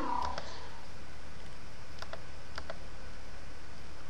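A few faint, sharp computer mouse clicks over a steady background hiss.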